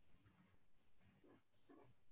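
Near silence: faint room tone with a few very quiet, brief sounds.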